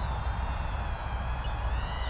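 Speck 80 brushed micro quadcopter's 8.5x20mm coreless motors and props whining thinly in flight, the pitch wavering and shifting as the throttle changes, under a steady low rumble.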